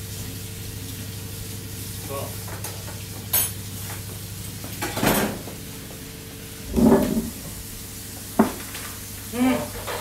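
Food sizzling steadily in a frying pan over a low steady hum, with a few sharp knocks and clatters of utensils and pans; the loudest is a short thump about seven seconds in.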